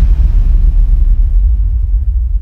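Deep, loud low rumble of a sound-design boom under a title card, the sustained tail of a hit struck just before, holding steady with almost nothing above the bass.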